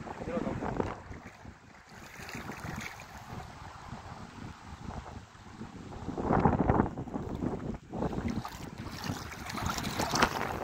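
Wind buffeting the phone microphone over the sloshing and splashing of feet wading through shallow river water, growing louder about six seconds in and again near the end.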